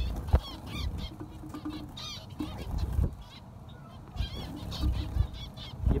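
A colony of zebra finches calling: many short overlapping beeps that rise and fall in pitch, with a few low thumps among them.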